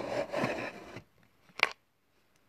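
Handling noise from small objects: a scraping rustle for about the first second, then a single sharp click about a second and a half in.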